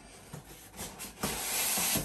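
Cardboard packaging handled, with a few light knocks, then a styrofoam insert scraping against the cardboard as it is slid out of the box: a steady rubbing hiss in the last second or so.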